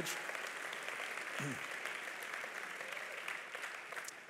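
A large congregation applauding, a dense steady clatter of many hands that slowly dies down toward the end.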